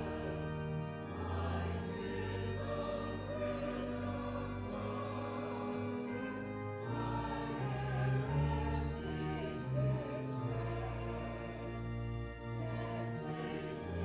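A choir singing a slow sacred piece over long held bass notes of an accompaniment.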